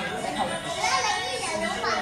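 Several people's voices chattering and calling out, with music playing underneath.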